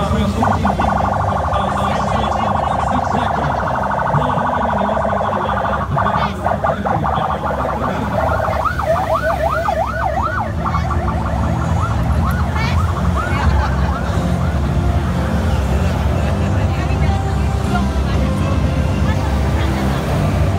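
Police escort sirens: a steady electronic siren tone for the first several seconds, then a fast rising-and-falling yelp about nine seconds in that fades over the next few seconds. Vehicle and motorcycle engines rumble underneath.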